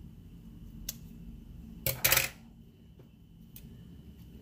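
Scissors cutting through a paper sticker sheet: a faint click about a second in, then one short, loud papery snip about two seconds in.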